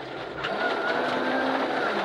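Ford Escort Mk1 rally car's engine running at a steady note under load, heard from inside the cabin over gravel and tyre noise, with a short knock about half a second in.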